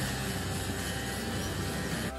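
Outdoor air-conditioner condenser unit running: a steady fan rush over a low compressor hum.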